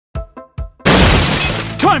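Cartoon soundtrack: three short, quick musical notes, then a sudden loud crash, like breaking glass, about a second in, which fades away. A voice starts just before the end.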